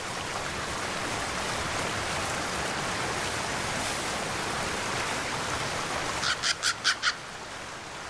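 A bird gives a quick run of about five short calls a little after six seconds in, over a steady rushing background noise.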